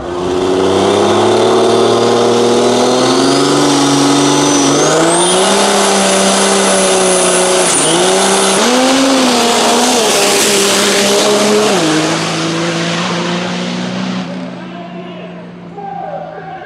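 Diesel rail dragster engine held at high revs at the starting line, its pitch stepping up, dipping and recovering, while a high turbocharger whistle rises and holds. About twelve seconds in, the engine note drops and the sound begins to fade.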